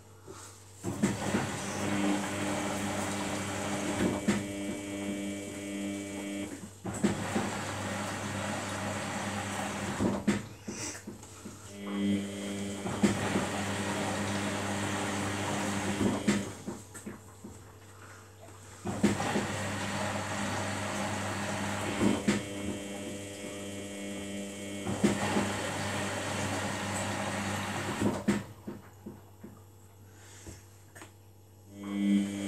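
Samsung WF80 front-loading washing machine tumbling its load during the final rinse. The drum motor whines and the wet laundry tumbles in runs of a few seconds, and the drum stops briefly between turns, three times. A steady hum runs underneath.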